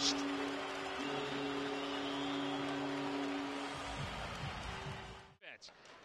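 Hockey arena goal celebration: the crowd cheers over a sustained chord of arena music, held steady for a few seconds. It fades with a few low thumps and cuts off suddenly near the end.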